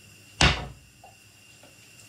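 A single sharp knock or bang of something hard in a kitchen, about half a second in, dying away quickly.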